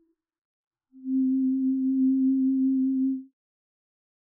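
A single steady, nearly pure low tone in the soundtrack, starting about a second in and held for a little over two seconds before cutting off.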